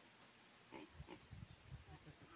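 Faint, short low grunts from a small black pig, several in quick succession starting just under a second in.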